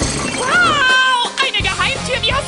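A crashing, shattering sound effect, followed about half a second in by a high-pitched cartoon voice crying out: it rises, falls, then holds one note briefly. Background music plays throughout.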